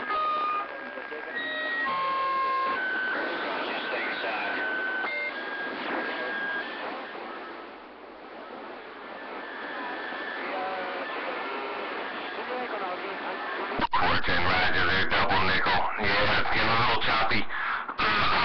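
CB radio receiver on the AM band: a hiss of band noise with steady whistle tones and faint, distant voices coming through. About 14 seconds in, a much stronger station keys up and comes in loud.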